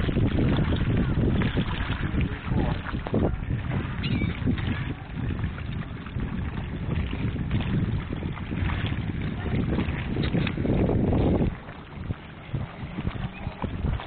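Wind buffeting the microphone with a low rumble on an open boat, with faint voices underneath. The rumble drops away about eleven and a half seconds in.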